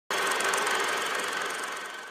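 Film projector running sound effect: a steady mechanical whirr with a thin high whine in it, starting abruptly and fading out gradually.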